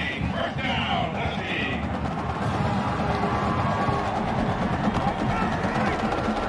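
Drums and percussion playing a steady rhythmic beat in a football stadium, over a continuous background of crowd noise.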